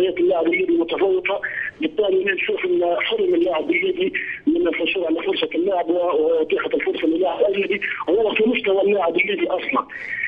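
A man speaking Arabic over a telephone line, the voice narrow and thin with nothing above the phone band.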